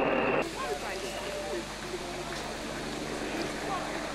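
Outdoor roadside ambience: a steady hiss with faint, distant spectator voices. It follows a louder sound that cuts off abruptly about half a second in.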